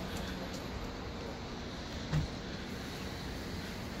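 Steady low vehicle rumble with a faint hum, and one short low thump about two seconds in.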